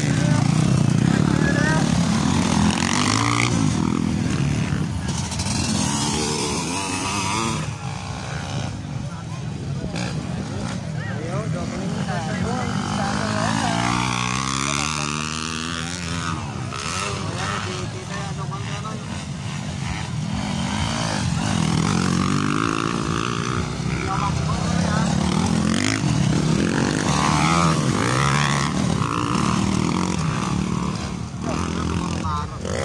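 Several 150cc-class motocross dirt bikes racing on a dirt track, their engines revving up and down as riders pass and pull away, pitch rising and falling with overlapping bikes. Crowd voices chatter underneath.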